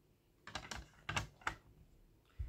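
A handful of sharp hard-plastic clicks and clacks over about a second: PSA graded-card slabs being handled and set down.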